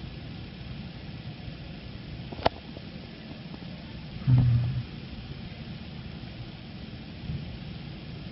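Low steady background hum with a single sharp mouse click about two and a half seconds in, as the drive's control panel is operated. Just after four seconds comes a brief low 'mm' from a voice.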